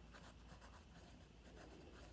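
Faint scratching of a pen writing on lined notebook paper, in quick short strokes.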